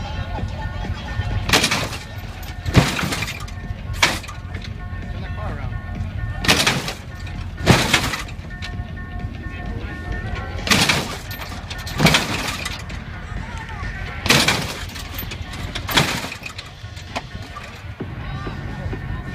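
A lowrider's hydraulic suspension working the car up and down on its rear wheels: about nine short, sharp clunks, mostly in pairs about a second apart. Background music and crowd chatter run underneath.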